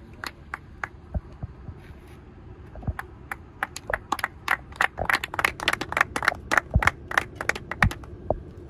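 A small group clapping by hand: a few scattered claps at first, growing into steady applause about three seconds in.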